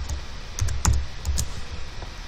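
Typing on a computer keyboard: about four separate keystrokes.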